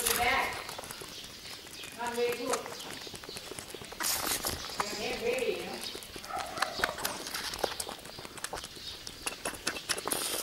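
Two-month-old baby goat sucking water from a plastic feeding bottle: a steady run of quick wet clicks and sucks at the teat.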